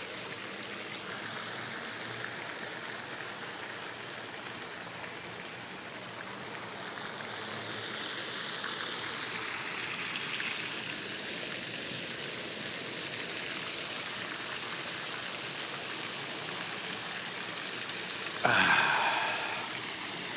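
Pond fountain spraying water that splashes back onto the pond surface, a steady rain-like hiss that grows a little louder about a third of the way in. A brief louder sound comes through near the end.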